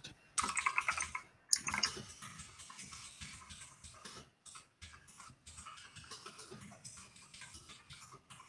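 Rapid typing on a computer keyboard, a quick run of keystroke clicks, louder in the first two seconds and then lighter and steady.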